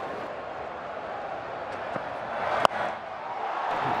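Stadium crowd noise with a single sharp crack of bat on cricket ball about two and a half seconds in. The crowd then grows louder as the ball goes up.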